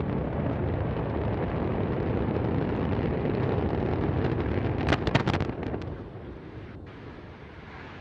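Antares rocket exploding just after liftoff in a failed launch: a heavy, steady rumble of the burning vehicle, broken about five seconds in by a burst of sharp loud cracks, after which the rumble dies down.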